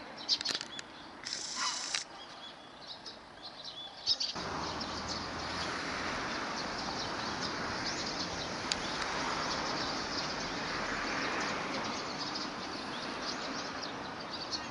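Water splashing as a cormorant thrashes and dives while struggling with a large fish, in short sharp splashes. About four seconds in, a steady rushing noise comes up suddenly and continues under the splashing.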